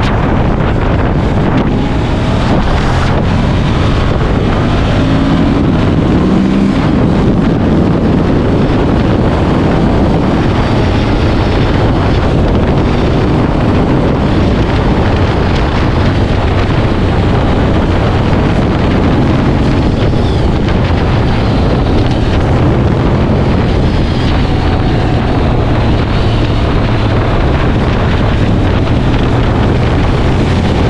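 Motorcycle riding at a steady speed: heavy wind rush on the microphone over the low, steady note of a Ducati Monster 1200 S's L-twin engine, with no sharp revving.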